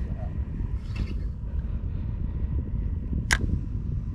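Steady low rumbling noise on an open boat, with one sharp click a little over three seconds in.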